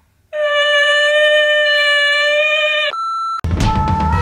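A long, loud, steady electronic tone, like a buzzer, for about two and a half seconds, then a short, higher, pure beep. Music with guitar and drums starts near the end.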